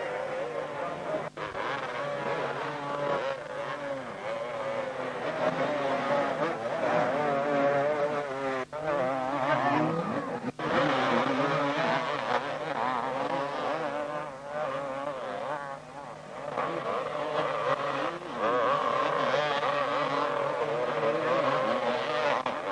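Several 250cc two-stroke motocross engines revving hard and unevenly, their pitch wavering up and down as the bikes fight for grip in deep mud. The sound cuts out for an instant three times.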